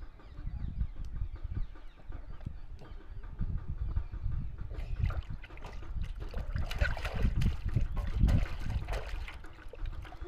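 Water splashing in a plastic tub as a toddler slaps and paddles it with his hands, irregular splashes that grow busier and louder in the second half.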